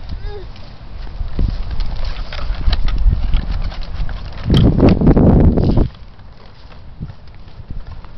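A small plastic tricycle rolls and rattles over a concrete sidewalk to uneven clopping knocks, along with walking footsteps. A louder rush of noise comes at about four and a half seconds, and the sound turns much quieter after about six seconds.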